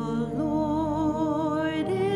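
Church pipe organ holding sustained chords while a cantor sings over it, the voice entering about half a second in with a strong vibrato.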